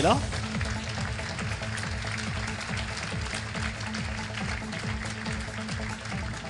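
Audience applauding steadily, with music playing underneath.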